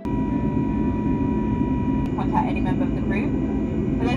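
Steady low rumble of a jet airliner's cabin in flight. A person's voice speaks over it from about halfway.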